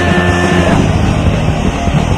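Loud, fast hardcore punk music: distorted guitars, bass and drums playing as one dense, unbroken wall of sound.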